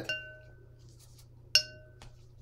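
Two ringing clinks of a paintbrush knocking against a hard container or palette while painting. One comes right at the start and a sharper, louder one about a second and a half in. Each rings briefly on the same few clear tones.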